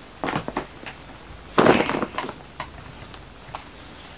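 Handling noises as someone leans down and reaches for things: a few light clicks and knocks, with one louder rustle about one and a half seconds in.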